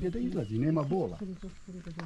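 Only speech: a man talking, his voice rising and falling.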